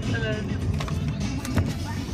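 A short, high sing-song voice call just after the start, over the steady low rumble of a car, with a few light taps in the middle.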